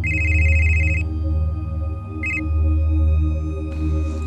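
Telephone ringing with a trilling electronic ring: one ring lasting about a second, then a short ring about two seconds in that stops abruptly as the call is answered. Beneath it runs a low, droning horror film score.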